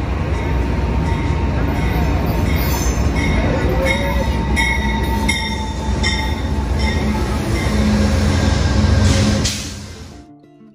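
Amtrak passenger train led by a GE P42DC diesel locomotive pulling slowly into the station alongside the platform: a loud, steady engine and wheel rumble with a low hum, and high-pitched squeals from the wheels and brakes starting about two seconds in as it slows.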